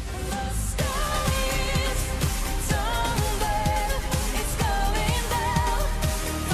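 A female singer over an electronic pop track with a steady beat. The track cuts in at the start, and the voice enters about a second in.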